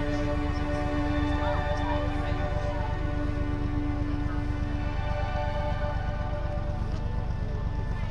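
Background music with long held notes over a steady low rumble.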